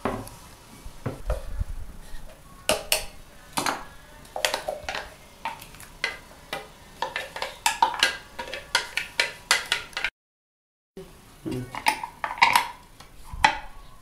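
A spoon scraping and knocking against a plastic blender jar and a metal frying pan as blended tomato is emptied into the oil: a string of short, sharp clicks and taps. The sound cuts out for about a second about two-thirds of the way in.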